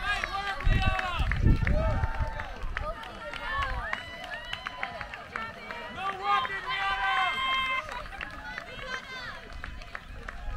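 Spectators yelling and cheering for passing cross-country runners, several high voices overlapping, some in long drawn-out shouts. A low rumble comes through between about one and two seconds in.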